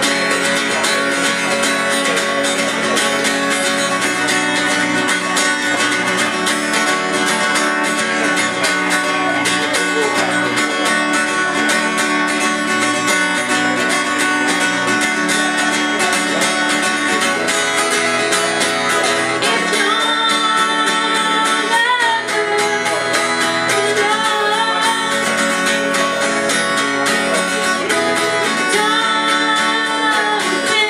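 Acoustic guitar strummed steadily in a live solo performance. A woman's singing voice comes back in over it about two-thirds of the way through.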